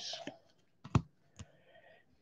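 Stiff trading cards being flipped through by hand, giving one sharp click about a second in with two fainter ticks around it.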